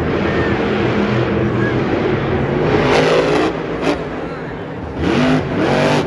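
Monster truck's supercharged V8 engine running hard and revving, its pitch rising in two surges, about three seconds in and again about five seconds in.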